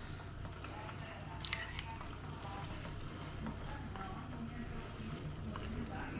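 Quiet kitchen room tone with a steady low hum and a faint voice in the background, and a small tick about one and a half seconds in.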